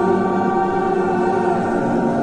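Calm ambient music of long, held chords in several layers, steady in level.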